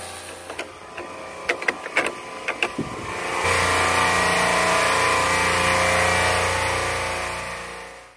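Logo-animation sound effect: a run of sharp mechanical clicks, then about three and a half seconds in a loud steady drone with a hiss that fades out near the end.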